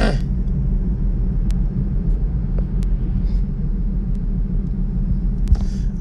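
Steady low rumble with a constant hum, and a few faint clicks.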